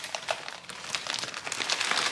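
Clear plastic bag of dried flat rice noodles crinkling as it is handled, with dense, irregular crackles throughout.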